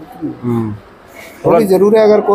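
Men talking in Hindi: a short low utterance, a brief pause, then speech resumes.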